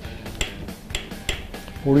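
Three sharp metallic clicks, roughly half a second apart, from a torque wrench working the nylock nut on a timing-belt idler pulley.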